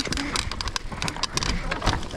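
Mountain bike riding fast down a rocky dirt trail: tyres crunching over dirt and stones, with many quick clicks and knocks as the bike rattles over the rough ground.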